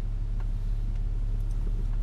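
Steady low hum of a car's engine idling while the car stands still, heard inside the cabin.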